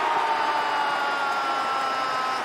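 A football TV commentator's drawn-out shout at a goal: one long held note sliding slowly down in pitch, over a steady wash of stadium crowd noise.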